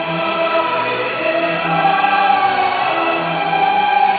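Choral music: a choir singing long held notes in chords.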